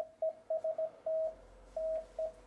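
Icom IC-7300 transceiver's CW sidetone: a single steady tone keyed on and off in Morse code dots and dashes by the radio's built-in memory keyer as it transmits a test call, 'TEST TEST DE G3OJV', at 18 words per minute.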